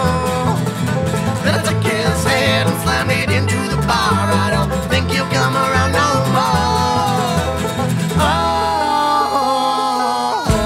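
Acoustic bluegrass band music: banjo, acoustic guitars and cello playing together, with men's voices singing and holding a long note near the end.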